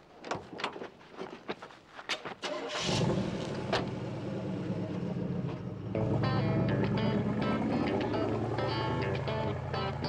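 Clicks and knocks at the pickup's cab, then about three seconds in a pickup truck's engine starts and runs steadily as the truck pulls away. Music comes in over it about halfway through.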